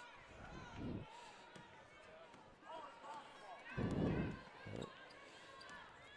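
A basketball bouncing a few times on a hardwood gym floor, with a thud about a second in and two louder ones around four seconds in, over faint voices of players and crowd echoing in the gym.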